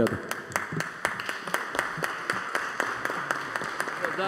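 A group of people applauding, many hand claps running steadily together.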